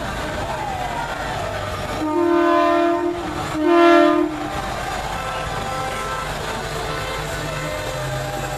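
Semi truck's air horn blown twice: a blast of about a second, then a shorter, louder one.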